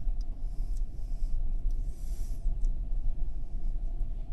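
Car's engine and drivetrain, heard from inside the cabin through a dash-mounted camera as a steady low rumble while the car rolls slowly down a ramp in reverse.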